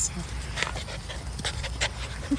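A 10-week-old golden retriever puppy panting: a few short, breathy puffs.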